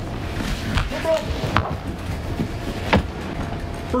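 A backpack being slipped off the shoulders and set down on a table: straps and fabric handled, with two sharp knocks, the louder one about three seconds in as the bag comes down.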